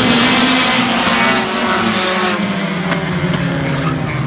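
A pack of short-track stock cars racing by, several engines running hard together over a steady wash of tyre and exhaust noise.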